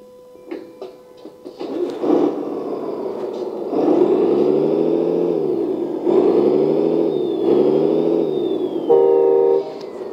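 LESU RC truck sound module playing its simulated V8 engine sound through a small speaker. After a few faint clicks, the engine sound starts about two seconds in, then revs up and back down three times. Near the end a short steady tone sounds, louder than the engine.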